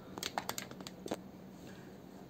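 Curly hair rustling and crackling as fingers lift and fluff it at the roots: a quick run of short, faint crackles in the first second or so, then quiet room tone.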